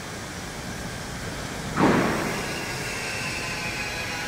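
Factory machinery noise: a steady background hum, then about two seconds in a sudden louder rush that settles into a steady high-pitched whine.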